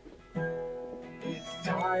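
Acoustic guitar song: after a brief near-quiet gap, a strummed chord comes in about a third of a second in and rings on, and a sung 'oh' begins near the end.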